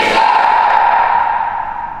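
A crowd of voices calling out together in unison, echoing in a large hall and dying away near the end.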